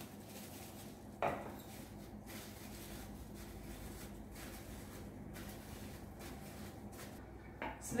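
Soft rubbing and rustling of plastic cling wrap smearing butter into the cups of a metal mini-muffin tin, with one light clink of the tin about a second in.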